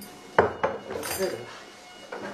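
A sharp knock followed by about a second of clattering and clinking of hard objects.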